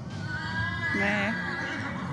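A horse whinnying once: a high call that quavers about a second in, then falls away.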